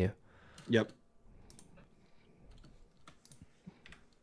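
Faint, scattered clicks of typing on a computer keyboard, a few irregular taps spread over a couple of seconds.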